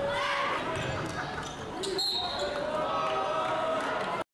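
Basketball game sound in a gym: a ball bouncing on the hardwood floor amid voices echoing in the hall, with a few sharp knocks about two seconds in.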